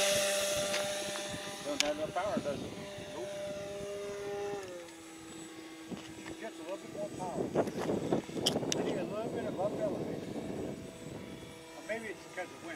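Radio-controlled biplane's motor and propeller droning as it climbs away after takeoff, fading over the first seconds, stepping down in pitch about five seconds in, then wavering up and down in pitch as it manoeuvres overhead.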